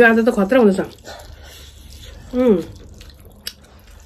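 A woman speaking at the start and again briefly halfway through, with soft eating sounds in the quieter gaps between.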